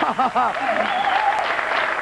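Studio audience applauding steadily. A voice or two calls out over the clapping in the first second.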